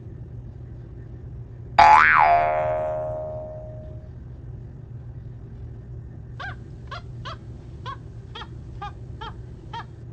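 A hanging bowl is struck once and rings loudly, its tone wavering briefly and then dying away over about two seconds. Later comes a run of about eight short, high squeaks, two or three a second.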